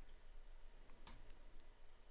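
Two faint clicks of a computer mouse, about half a second apart, over quiet room tone.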